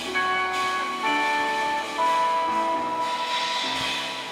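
A live band of piano, electric guitar, double bass and drum kit playing a slow passage of long, ringing notes, with new notes coming in about once a second.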